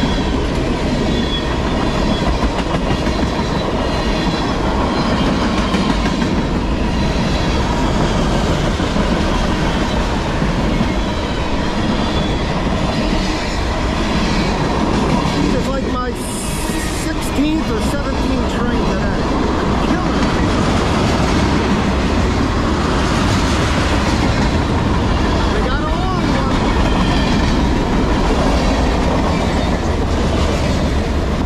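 The cars of CSX manifest freight M404 rolling past close by: a steady, loud rumble of steel wheels on rail with clickety-clack, and a brief dip about halfway through.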